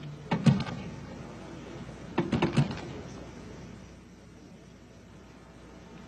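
Two short bursts of clattering knocks about two seconds apart, over a faint steady background.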